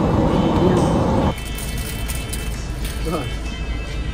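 Indistinct talking over background music, with a dense rushing noise that cuts off abruptly about a second in, leaving a quieter bed with a low hum.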